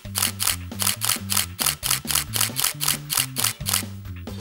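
Nikon D5500 shutter firing in a continuous burst, about five shots a second, stopping just before the end. Background music with a bass line plays underneath.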